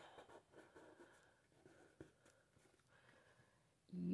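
Near silence: room tone with a few faint light taps, from a pen and card being handled on a tabletop.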